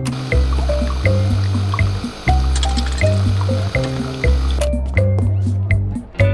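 Background music with a steady beat, over a coffee machine dispensing into a cup: a steady hiss of pouring that cuts off suddenly after about four and a half seconds.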